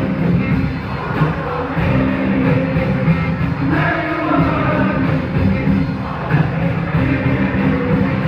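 A large all-male group singing together over a live rock band with guitar and drums, heard from the audience.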